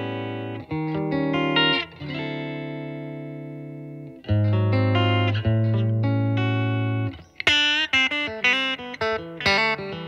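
Fender American Elite Telecaster played clean through an amp on its bridge Noiseless single-coil pickup. Chords are struck and left to ring, then a quick run of bright single-note licks fills the last few seconds.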